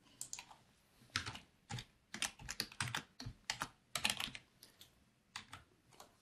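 Typing on a computer keyboard: an irregular run of short, faint keystrokes with a couple of brief pauses.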